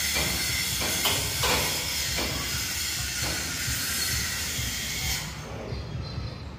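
Electric arc welding on the steel truck cargo body: a steady crackling hiss from the arc, which stops about five seconds in.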